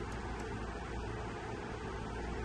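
Steady background hum with an even hiss, with no distinct snips or clicks.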